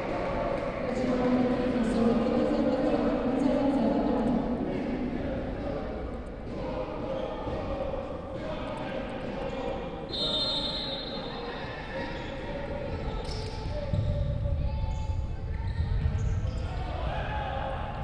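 Live sound of a futsal match in a large sports hall: thuds of the ball on the parquet floor with players' voices, echoing in the hall. A brief high tone sounds about ten seconds in.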